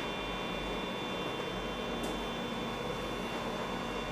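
Steady whir and hum of running computer and test equipment, with several faint high, steady tones over an even noise.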